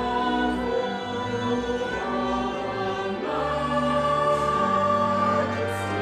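Choral music: a choir singing slow, sustained chords over a low bass line, with the harmony shifting about three seconds in.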